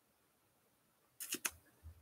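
Near silence, broken a little over a second in by a quick cluster of three short clicks.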